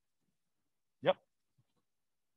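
A person saying a single short "yep" with a rising pitch, in near silence.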